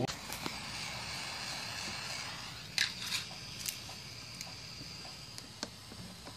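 Faint clicks and light scrapes of fingers handling a metal antenna connector on a radio-control transmitter, over a soft hiss.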